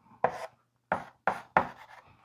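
Chalk striking and scraping on a blackboard in four short, sharp strokes as an equation is written by hand.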